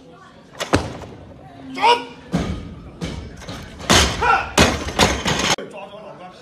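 A loaded barbell with bumper plates is dropped from overhead onto a lifting platform: a sharp slam about a second in, then a run of heavy thuds with men's shouts over them, cut off abruptly near the end.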